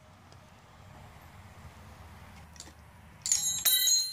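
Faint low hum for about three seconds. Then, near the end, several sharp metallic clinks with a bright, lingering ring as steel combination wrenches knock against each other and the fork's damper-rod nuts.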